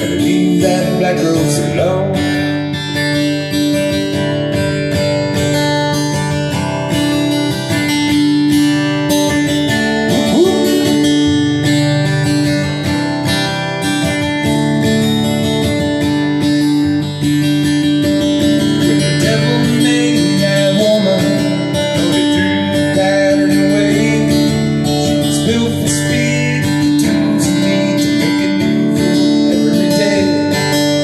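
Acoustic guitar strumming chords in a steady rhythm, played live.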